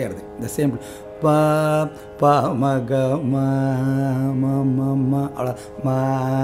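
Male Carnatic vocalist singing phrases of raga Surutti on solfa syllables over a steady drone. He sings a short note, then a long held note with wavering ornaments, then a new note begins near the end.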